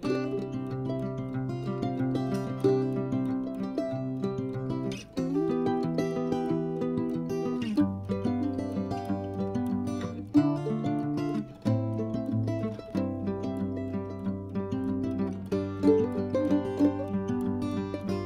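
Background music: a light plucked-string tune over low held bass notes that change every few seconds.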